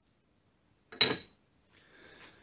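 The new mini lathe tailstock footplate, a flat metal plate, set down on the lathe bed: one sharp metallic clink with a brief ring about a second in.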